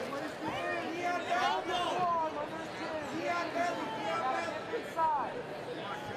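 Crowd of spectators shouting: several voices call out over one another without a break.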